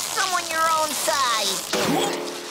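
A cartoon character's wordless vocalising in short calls, the pitch sliding up and down and breaking off every few tenths of a second.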